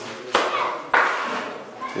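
Two sharp slaps of wet cement mortar being thrown and pressed onto the masonry around a broken door frame, about half a second apart, each with a short echo in the room.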